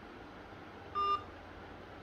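A single short electronic beep about a second in, one steady tone lasting about a quarter of a second, over faint room tone.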